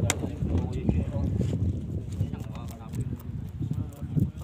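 Irregular low knocking and rumble around a wooden fishing boat on open sea, water slapping the hull, with a sharp knock at the very start and muffled voices mixed in.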